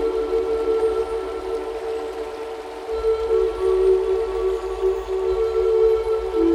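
Slow, meditative Native American flute music: long held notes that move to a new pitch every few seconds, with a soft background pad, over a faint steady hiss of water nature sounds.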